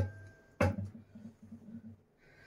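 A wooden spoon set down on a glass pan lid: one light knock about half a second in, after the faint ring of the lid just put on the pan dies away.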